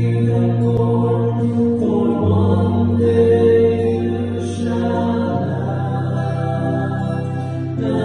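Small church choir singing a slow song in long, held notes, the lower notes changing pitch about two seconds in and again about five seconds in.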